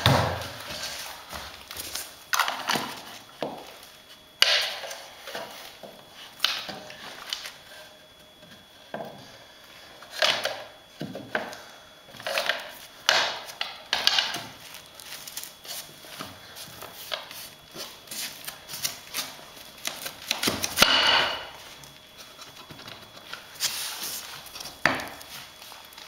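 Laminate floor planks being handled and fitted together while a row is laid: irregular knocks, taps and clatter of the boards, one heavier knock near the end.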